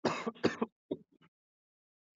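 A person clearing their throat, two quick loud rasps right at the start, then a few fainter short sounds.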